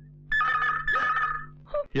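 Telephone ringing: one ring of two warbling high tones lasting just over a second, over a low steady hum.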